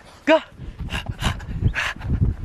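French bulldog puppy running across grass: three breathy huffs over quick, low thumping footfalls.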